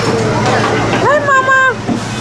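Fairground ride ambience: a steady low machinery hum under voices, with one voice calling out and holding a note for about half a second in the middle.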